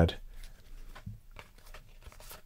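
Trading cards being sorted by hand: faint, irregular slides and light ticks of card against card.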